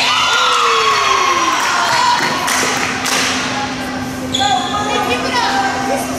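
Gymnasium crowd cheering and shouting as a volleyball point is won, the voices starting all at once and falling in pitch, with another round of shouts a little past the middle. A few sharp thuds of the ball on the hardwood floor, and a steady low hum underneath.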